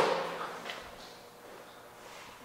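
A heavy wheel and tyre handled onto a bathroom scale: a short thump right at the start fading quickly to quiet room tone, with a faint click under a second in.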